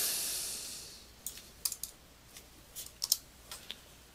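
Computer keyboard and mouse clicks: about eight scattered, sharp clicks as highlighted text is deleted from a search box. A soft hiss at the start fades away within about a second.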